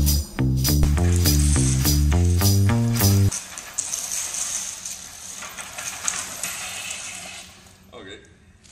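Music with a stepping bass line and percussion that cuts off abruptly about three seconds in. After it comes the light rattling whir of a push reel mower's spinning blades and wheels as the mower-bicycle rolls over concrete, fading near the end.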